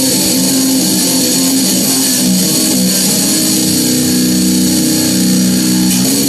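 Stratocaster electric guitar played through a distortion pedal, its low string tuned down to B, playing a distorted death metal riff of held notes that change pitch every second or two.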